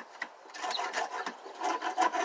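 Hand scraper scraping old debris off a wooden fascia board corner to clean it for adhesive, in quick repeated strokes that start about half a second in.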